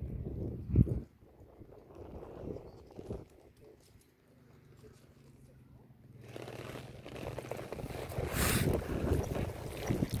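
Wind blowing across the microphone, coming in about six seconds in and growing louder, after a quieter stretch. A single thump about a second in is the loudest sound.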